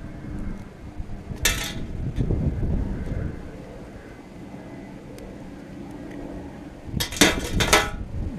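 Hand wire cutters trimming the excess tie wire: a short, sharp snip about a second and a half in amid handling rustle. Near the end, a quick cluster of knocks and clatter.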